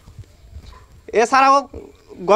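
A man's voice in a street interview: a short pause, then one brief spoken word about a second in.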